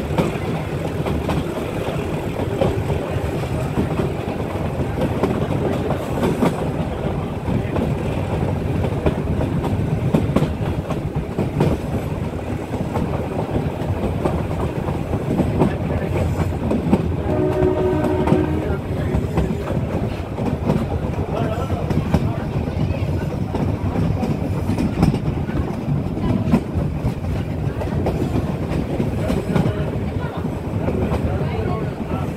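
A meter-gauge passenger train heard from inside a coach: steady wheel-and-rail clatter with the clicks of rail joints, and a YDM-4 diesel locomotive working hard as it accelerates. The train horn sounds once for about a second and a half, just past the middle.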